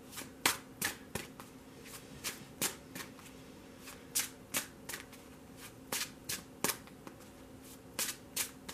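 A deck of tarot cards being shuffled by hand: crisp card snaps at uneven spacing, two or three a second.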